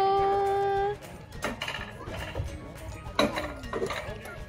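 A long held high note cuts off about a second in. After it comes a lighter rattle and clatter of a bob-luge sled running along its steel rails, with a few sharper knocks.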